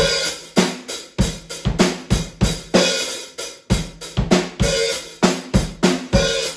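Acoustic drum kit played solo: a steady groove of bass drum, snare and hi-hat with cymbals ringing between the strikes.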